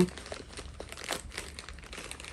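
Plastic courier mailer bag crinkling faintly as it is handled and picked at to open it, with small irregular crackles.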